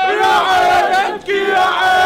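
A crowd of men chanting loudly in unison: two shouted phrases of about a second each, with a brief break between them.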